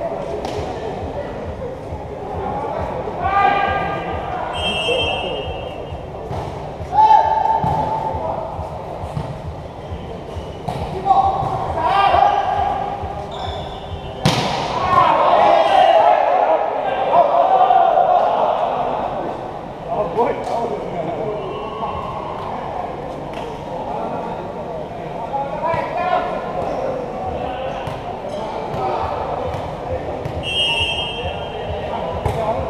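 Volleyball being played in a large hall: repeated hits of hands on the ball and players calling and shouting, with a short referee's whistle about five seconds in. About halfway through comes the sharpest hit, followed by several seconds of loud shouting.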